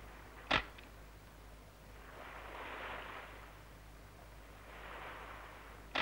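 A hand-held film camera's shutter clicking twice, once about half a second in and again at the very end, each with a small second tick just after. Two soft hissing swells come between the clicks.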